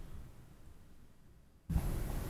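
The echo of a voice dies away in a reverberant room into near silence, then room tone with a low hum cuts back in abruptly near the end, as if the audio feed switched back on.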